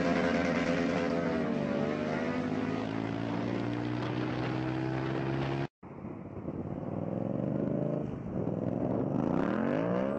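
Motorcycle engine running at a steady pitch. A sudden cut a little past halfway gives way to a duller recording in which the engine note rises as it accelerates near the end.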